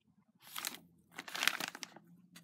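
Paper Happy Meal bag crinkling as it is handled and turned, in two rustles, the second longer and louder.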